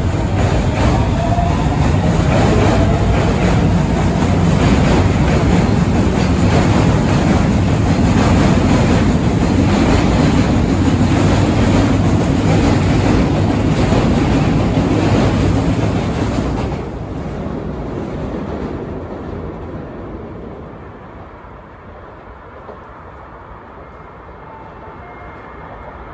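Osaka Metro 30000 series subway train running past close by, with loud steady rail noise, wheels clacking over the rail joints and a faint rising whine near the start. About two-thirds of the way through the sound cuts abruptly to a much quieter, distant train on elevated track.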